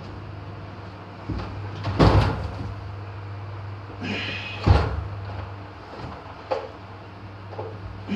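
A few knocks and thumps like a door or panel being moved or shut, the loudest about two seconds in and another just under five seconds in, over a steady low hum.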